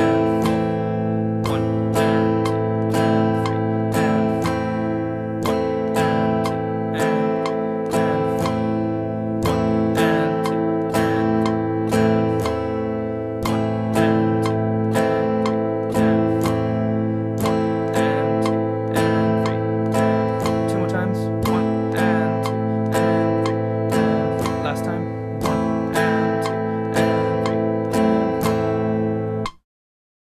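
Guitar strumming an A minor chord over and over in a steady eighth-note pattern with tied, syncopated strokes, so the chord rings on between strums. The playing cuts off suddenly near the end.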